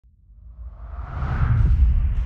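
A whoosh sound effect with a deep rumble, swelling up from silence and loudest near the end.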